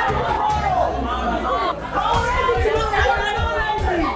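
Several people talking over one another in overlapping chatter, with a run of short low thuds in the second half.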